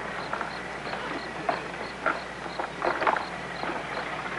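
Faint crickets chirping in short, evenly spaced pulses, about three a second, over a low hiss, with a few scattered clicks and knocks.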